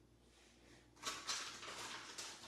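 Paper artwork rustling as it is handled and pulled from a pile, starting about a second in after a near-silent moment.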